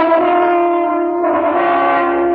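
A loud, steady, droning chord of held tones from a radio drama sound effect for the noise of the road's rotor machinery. It swells as more tones join in about a second in.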